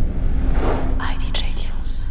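Record-label audio logo: a deep low boom that rings on and slowly fades, with a whispered voice over it from about half a second in.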